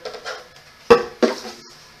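Two sharp knocks about a third of a second apart, each with a brief hollow ring: molded plastic Step2 toddler-chair parts bumping together as they are handled during assembly.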